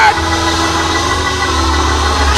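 Church instrumental accompaniment holding a steady sustained chord over a low bass, between the preacher's sung phrases; a sung note from the preacher trails off at the very start.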